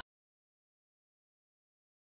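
Silence: the sound cuts out completely.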